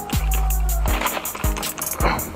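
Background music with a steady beat: quick hi-hat ticks, kick drums and a held bass note in the first second.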